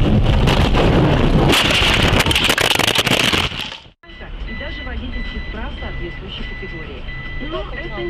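Loud noise full of clicks, fading out about four seconds in. Then a steady high electronic beep, repeating in short pulses, over voices.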